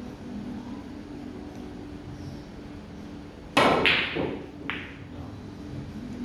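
A pool shot about three and a half seconds in: a loud, sharp clack of pool balls striking, with a brief ringing tail. A lighter click follows about a second later. A steady low hum runs underneath.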